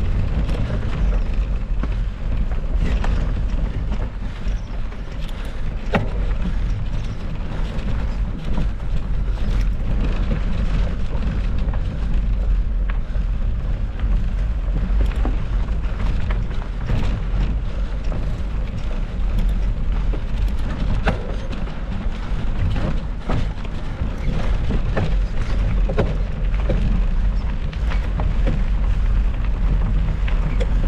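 Mountain bikes riding a rocky dirt trail, heard through an action-camera microphone on a following bike: a steady deep rumble of wind buffeting the microphone, tyres rolling over gravel and rock, and frequent sharp clicks and rattles as the bike hits stones.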